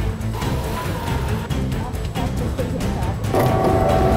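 Background music with a heavy bass line; a steady held tone joins near the end.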